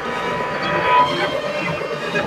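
Electronic bass music (dubstep/drum and bass) in a stripped-back passage with the deep bass dropped out. What is left is a noisy synth texture carrying a steady high tone.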